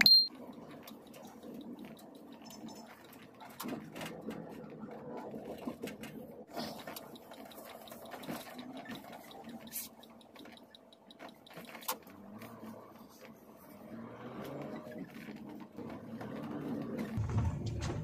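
Car cabin noise while driving slowly: low, uneven engine and road noise with scattered small clicks and rattles, and a sharp click at the very start.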